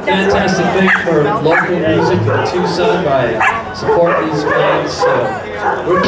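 People talking and chattering, with a few short, high, sharply rising yelps cutting in about a second, a second and a half and three and a half seconds in.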